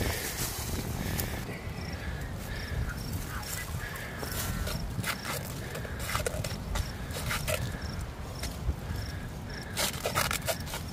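Scuffling, rustling and footsteps in long grass as handlers hold down an alligator, with wind on the microphone and scattered knocks. Faint high chirps repeat about twice a second through the middle.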